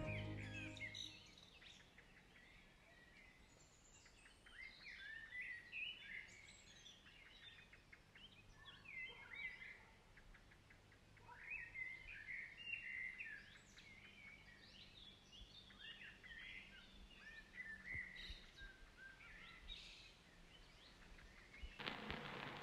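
Faint bird chirping: many short calls that rise and fall in pitch, coming and going in clusters. Music fades out in the first second.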